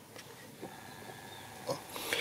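Faint room tone with a brief soft click or breath sound near the end.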